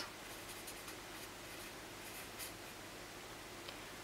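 A marker pen writing on a sheet of paper: faint, short, irregular strokes as words are written out.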